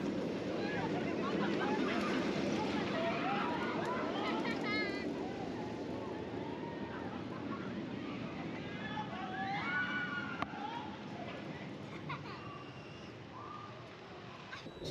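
Riders screaming on a roller coaster, many wavering high cries over a steady rush of noise from the running ride, growing fainter towards the end.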